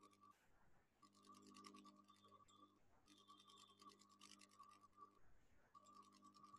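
Near silence, with faint bursts of rapid scratchy ticking lasting a second or two each, over a faint steady hum.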